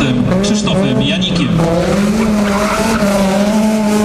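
Honda Civic Type-R rally car's four-cylinder engine revving hard, its pitch rising and falling as the car is thrown through a tight turn, with tyre squeal from about halfway through.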